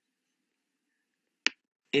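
Near silence broken by a single sharp click about one and a half seconds in.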